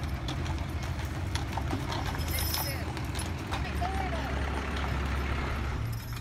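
Hooves of a pair of Percheron draft horses clip-clopping on a paved street as they pull a covered wagon, a run of sharp irregular clicks over a steady low rumble.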